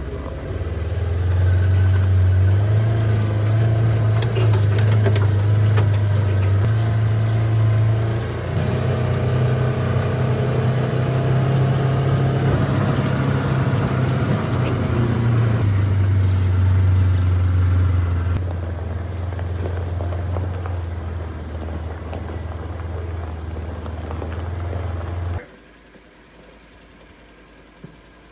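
Polaris Ranger side-by-side's engine droning steadily as it drives, heard from inside the open cab, its pitch stepping up and down a few times with speed. The sound cuts off suddenly near the end.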